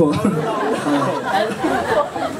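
Several voices chattering over one another, with a little laughter, after a joke from the stage.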